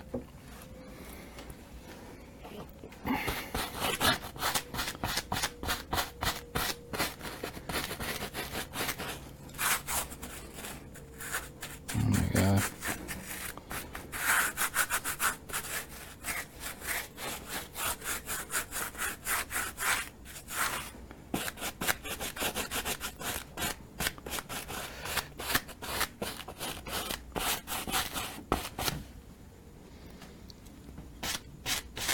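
Quick, repeated rubbing strokes worked against the surface of a painting, several strokes a second in runs with short breaks, starting about three seconds in and stopping just before the end. A single dull bump comes about midway.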